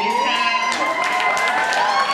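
Several voices hold long, high, wordless notes that glide up and down and overlap: a woman vocalizing at the microphone, with audience voices calling out along with her.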